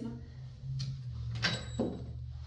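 A few wooden knocks and a brief high squeak from an antique wooden slant-front secretary desk being handled, as a part of it falls; the loudest knock comes about one and a half seconds in.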